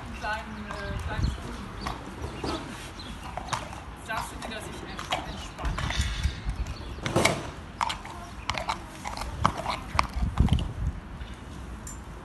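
A horse's hooves stepping on a horse trailer's matted loading ramp and on wet concrete: irregular clops and thuds, the heaviest about seven seconds in and again about ten seconds in.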